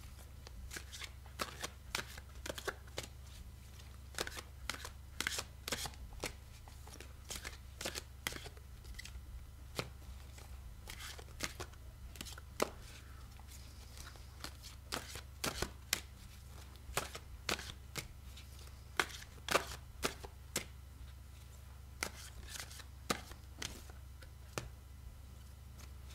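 A deck of oracle cards being shuffled overhand by hand, the cards tapping and slapping against each other in many short, irregular clicks.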